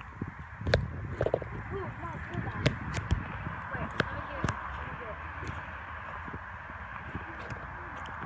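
Campfire wood crackling with scattered sharp pops, over faint distant voices.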